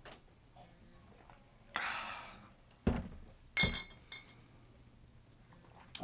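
Glass beer bottle knocking twice on a hard surface, the second knock with a short glassy ring, after a brief breathy hiss.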